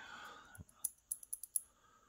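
A quick run of about eight light, sharp clicks over less than a second, from a Sturmey Archer AW hub's steel planetary cage, with a pawl still fitted, being turned over in the hand.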